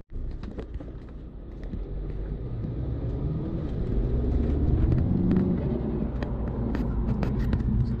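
Mini Cooper S (F56) turbocharged 2.0-litre four-cylinder engine with an aFe Magnum FORCE Stage-2 cold air intake, accelerating in sport mode. The engine note climbs and grows louder over the first few seconds, then holds.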